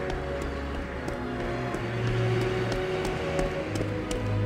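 Wind sound effect, a steady whoosh, over soft background music with long held notes.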